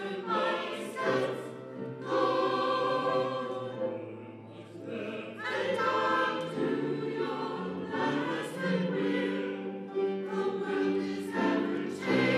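Mixed church choir of men and women singing, in sustained phrases with brief breaths between them.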